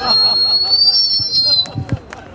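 A long, high whistle that rises a little and falls away, stopping after about a second and a half, over voices in the crowd: audience whistling and cheering.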